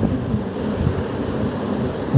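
Steady low rumbling background noise, with no clear sound standing out, in a pause between a man's speech.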